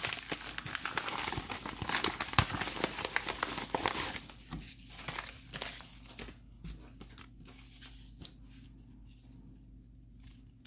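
A padded bubble mailer being torn open and crinkled by hand. Dense crackling for about the first four seconds, then scattered crinkles and small clicks that thin out and fade toward the end.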